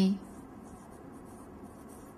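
Faint, irregular scratching of a pen writing on a surface.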